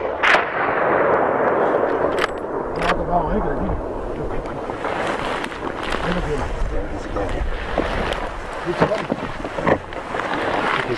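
The report of a hunting rifle shot rolling and echoing back off the mountain slopes, starting with a sharp crack and fading over several seconds. Two sharp clicks come about two and three seconds in, and low voices follow.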